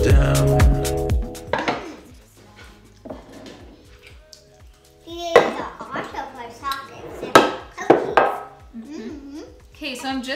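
Background music cuts out about a second in; then, from about halfway, glass storage jars and their bamboo lids clink and knock sharply against each other and the counter as they are filled and pressed shut.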